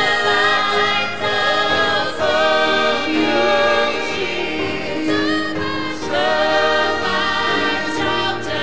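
A small choir of men and women singing a gospel song into microphones, with sustained, held notes.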